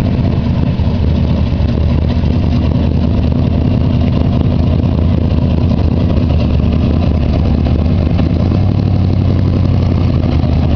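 Dirt-track stock car's engine running steadily at low speed, a deep, loud, even engine note with no hard revving, as the car rolls up close.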